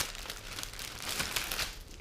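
Clear plastic packaging bag crinkling and rustling as a plastic litter scoop is pulled out of it.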